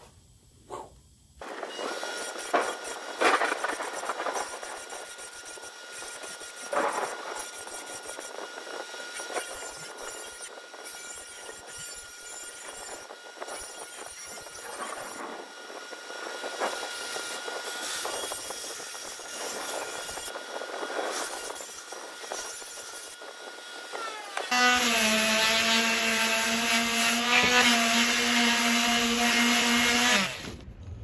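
A steel blade is ground on a bench grinder: a rough, uneven scraping over a thin steady whine. Near the end a palm sander on steel plate takes over, a louder steady buzzing hum.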